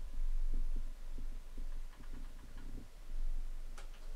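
A low, throbbing hum with soft irregular thumps throughout. One sharp keyboard key click comes near the end, the key press that opens ShrinkIt's catalog prompt.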